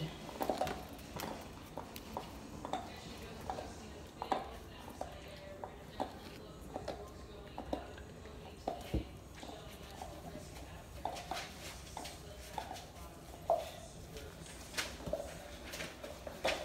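Four-week-old Labrador retriever puppies giving short, scattered whimpers and squeaks, with light scratches and knocks from their paws on the pen wall.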